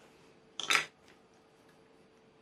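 A short scrape about half a second in as small balsa wood parts are handled and moved on a cutting mat.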